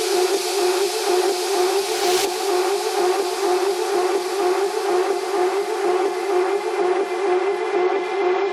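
Techno track in a beatless breakdown: a steady, wavering synth drone under a hiss of white noise, with no kick drum. Near the end the hiss thins out as its high end drops away.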